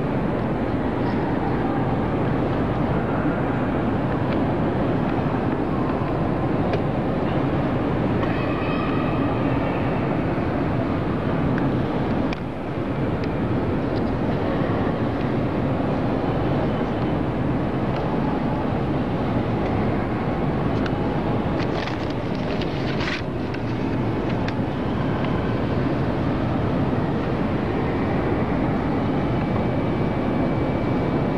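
Steady, dense background noise of a large hall, strongest in the low range, with a few brief clicks a little over two-thirds of the way through.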